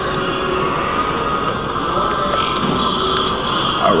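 Steady airport terminal background noise: an even hum with a few faint steady tones and no change in level.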